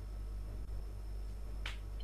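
Steady low hum with a faint thin high tone over it, and a single short sharp click near the end.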